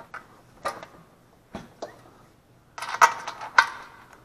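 Small clicks and rattles of a steel bolt and washer against hard plastic engine covers as the bolt is worked into place, a few single clicks first and a busier cluster about three seconds in.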